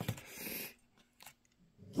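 A short click and soft handling noise as dessert pieces are pushed onto a toothpick on a paper plate, then near silence for over a second.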